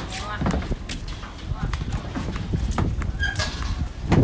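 Footsteps walking on a concrete path, an even step every half second or so, over a low rumble of wind on the microphone, with faint voices in the background.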